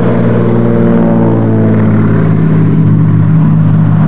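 De Havilland Canada DHC-2 Beaver's Pratt & Whitney R-985 Wasp Junior radial engine and propeller running loud and steady as the plane rolls along the runway, a deep drone with a strong low hum.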